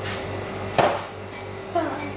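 One sharp knock with a short ring about a second in, over a steady low electrical hum with a faint steady tone; a voice begins near the end.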